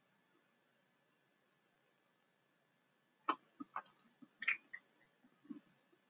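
Near silence for about three seconds, then a brief cluster of sharp clicks and a few softer knocks over the next two seconds.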